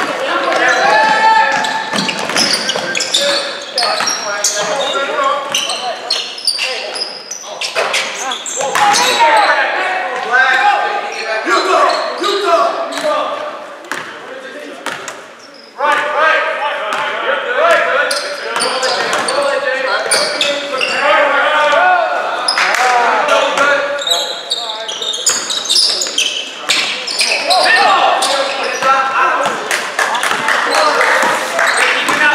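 Basketball game play on a hardwood gym floor: the ball dribbled in repeated sharp bounces, with players and spectators calling out, all echoing in the hall.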